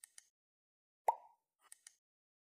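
Sound effects of an animated subscribe button: a quick pair of mouse clicks, a louder pop about a second in, then another quick pair of clicks near the end.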